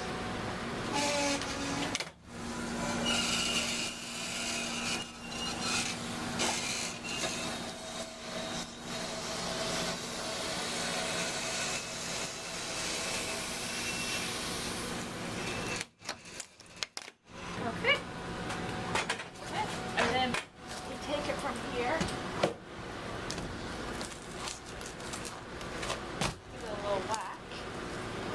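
Motorised core splitter running steadily with a low hum as its carriage travels along the core, razor blades slitting the thick plastic core liner and a piano-wire "cheese wire" cutting the sediment core in half. The steady running breaks off about 16 seconds in, followed by uneven scrapes and knocks.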